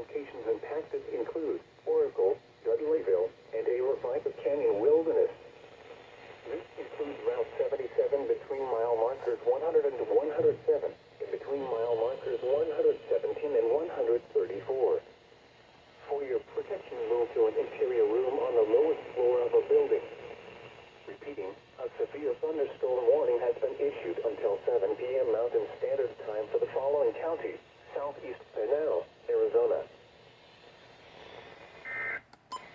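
A Midland weather alert radio's small speaker plays the NOAA Weather Radio broadcast voice reading out a severe thunderstorm warning. It comes in phrases broken by short pauses, and the sound is thin and narrow.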